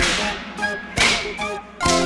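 Two quick cartoon whoosh sound effects for a ninja's martial-arts moves, one at the start and one about a second in, each cutting in sharply and fading fast. A musical chord comes in near the end.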